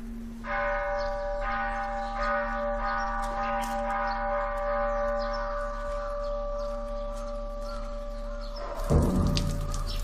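A bell struck once about half a second in, ringing on with several clear tones that fade slowly over about eight seconds. Near the end a louder, low-pitched sound cuts in.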